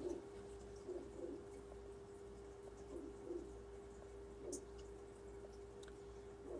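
Quiet room tone: a faint steady hum, with a few soft, faint low sounds in pairs about a second and about three seconds in, and another near the middle.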